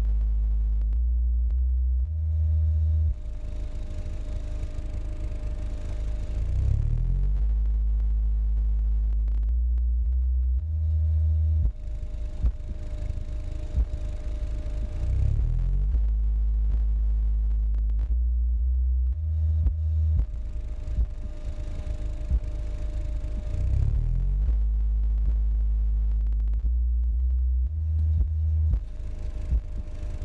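Kicker Comp C 12-inch subwoofer (44CWCD124) in a sealed box playing a bass music-simulation test track. Deep stepped bass notes alternate with stretches of rapid pulsing beats, and the pattern repeats about every eight seconds.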